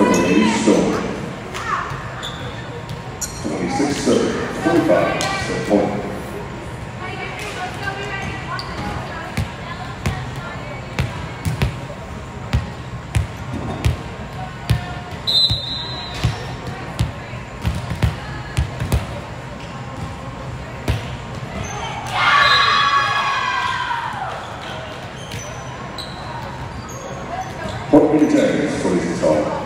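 A volleyball knocking sharply and repeatedly on a hardwood gym floor and off players' arms, the knocks echoing in the hall, with a short high whistle about halfway through. Near the end, players' voices shout and cheer loudly as the point is won.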